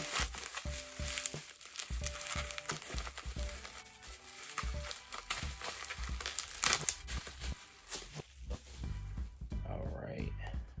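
Plastic packaging crinkling and rustling as a small wrapped item is pulled from a padded mailer and unwrapped by hand, with a louder burst of crinkling about two-thirds of the way in. A few quiet held musical notes sound in the first half.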